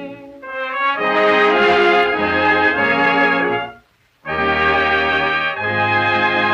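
Instrumental passage of a 1936 sweet-style dance orchestra record, the band playing sustained chords. The music breaks off for about half a second around four seconds in, then comes back in with a new held chord.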